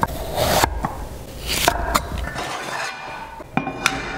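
Kitchen knife cutting through raw pumpkin flesh and meeting a wooden chopping board, in a few scraping strokes. Near the end a stainless steel pot clinks and rings briefly.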